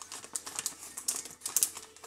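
A resealable plastic pouch of goji berries crinkling and crackling in the hands as its stuck zip seal is tugged at and will not come open. The crackles are irregular and crisp.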